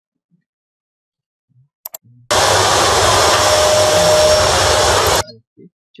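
Vacuum cleaner running, heard from a video clip's soundtrack: a loud, even rush with a faint steady whine in it that starts abruptly a little over two seconds in and cuts off about three seconds later. A couple of light clicks come just before it.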